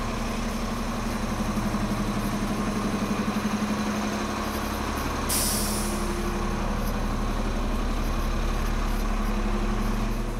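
City bus engine idling steadily at the stop, with a short sharp hiss of released air about five seconds in, the kind made by a bus's air brakes.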